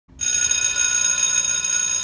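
A school bell giving one steady ring of about two seconds.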